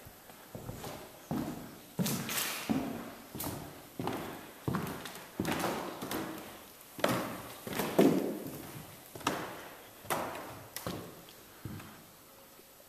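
Footsteps on a hard floor, about one or two steps a second, each with a short echo from the empty room; the loudest steps come around eight seconds in.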